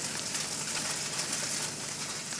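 Crumbled tofu sizzling in hot oil in a frying pan: a steady hiss with fine crackle.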